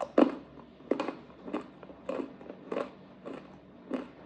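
Close-miked crunching of a hard pretzel being chewed, in a steady rhythm of about seven crunches a little under two per second. The first crunch, just after the start, is the loudest.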